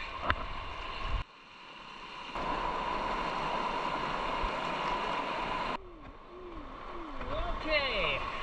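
Shallow river rapids rushing past close to the camera at water level. The rush builds over the first couple of seconds, holds steady and then cuts off suddenly about six seconds in.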